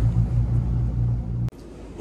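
A steady low rumbling hum, with the sound track's room noise, that cuts off abruptly about one and a half seconds in.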